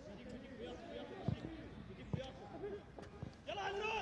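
Faint open-air football-ground sound: scattered distant voices of players and a few spectators, with two dull thumps of the ball being kicked, about a second and two seconds in. A louder voice rises near the end.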